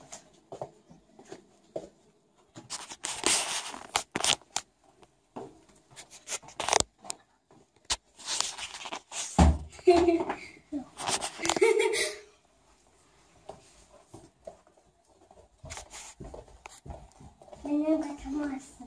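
Rustling and handling noises from people moving through the rooms of a house, with a bump about halfway through and brief vocal sounds from a child just after it.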